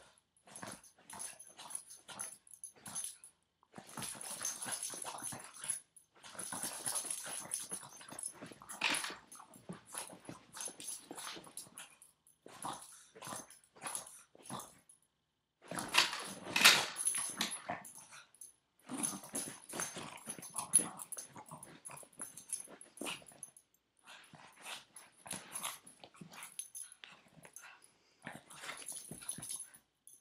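Boston Terrier tugging at a slipper on its owner's foot, its dog noises coming in irregular bursts with short gaps, loudest about sixteen seconds in.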